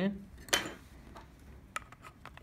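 A sharp metallic click about half a second in, followed by a few faint ticks: a Micro SIM card being pushed into its slot in the walking stick's metal bottom fitting with metal tweezers.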